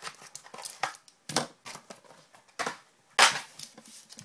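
Trading cards and their foil pack wrappers being handled, giving short, sharp crinkling and rustling bursts about every half second. The loudest burst comes about three seconds in.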